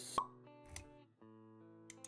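Intro music of soft sustained chords, with a sharp pop sound effect just after the start and a short swish a little before the middle.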